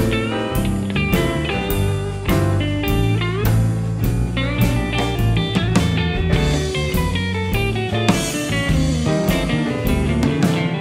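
Blues electric guitar solo on a Telecaster-style guitar, quick runs of single notes with a few bent notes, over a bass line and a drum kit.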